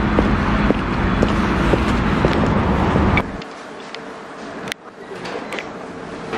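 Boot footsteps on pavement, about two a second, over a low street rumble with a steady traffic hum. About three seconds in this cuts off suddenly to the quieter, even hum of a shop interior with a few scattered clicks.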